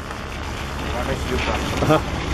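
Low rumble of wind buffeting the microphone mixed with a nearby pickup truck's engine, growing slightly louder. A voice comes in briefly near the end.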